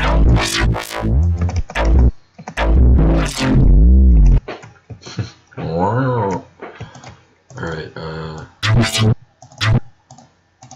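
Synthesized neuro-style dubstep bass from the Harmor synth, band-pass filtered, playing a run of notes whose tone bends and sweeps up and down. For the first four seconds or so the notes are loud and heavy in the low end. After that come quieter, thinner filtered stabs, with a couple of brighter bursts near the end.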